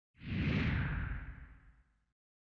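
Whoosh sound effect of an animated logo intro: a single sweep of noise over a low rumble that swells in just after the start, slides down in pitch and fades out about a second and a half in.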